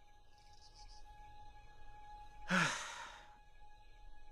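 A cartoon panda's long, dejected sigh about two and a half seconds in: a breathy exhale that opens with a low voice gliding downward. Soft sustained notes of the film score are held underneath.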